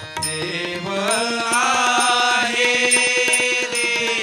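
Marathi abhang bhajan: voices singing a devotional melody with harmonium, over a quick steady beat of tabla and taal (small hand cymbals), swelling about a second in.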